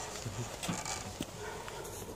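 Quiet pause just after a violin and guitar tune ends: faint scattered knocks and shuffling from the players moving and handling their instruments, with one sharper click about a second in.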